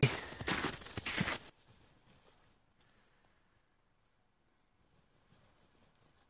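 Soft crunching steps in snow with outdoor noise for about a second and a half, then an abrupt cut to near silence.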